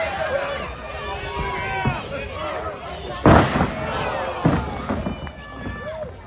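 A wrestler's body slammed onto the ring mat a little past halfway: one loud, sharp crash, followed by a couple of smaller knocks. Crowd voices and shouting run throughout.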